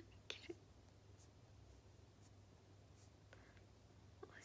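Near silence over a steady low hum, with two short, faint breathy bursts about half a second in: a young woman's stifled laughter behind her hand.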